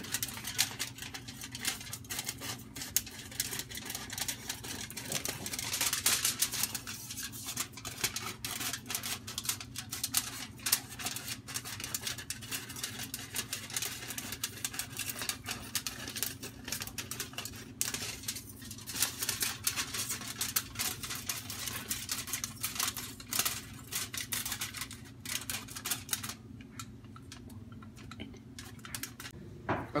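Scissors snipping along a spiral through a sheet of aluminum foil, the foil crinkling as it is turned. The result is a dense run of small clicks and crackles that thins out near the end.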